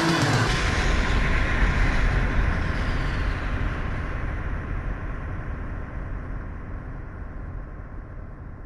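The last chord of the heavy metal song cuts off just as this begins, leaving a low rumbling wash of noise that fades out steadily, its treble dying away first.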